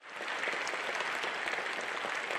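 An audience applauding steadily, the clapping fading in at the start.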